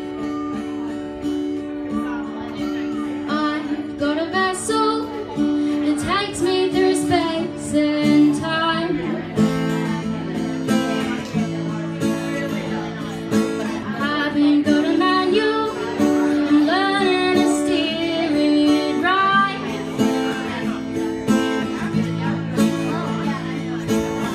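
An acoustic guitar playing with a woman singing over it. The guitar plays alone at first, and the voice comes in about three or four seconds in.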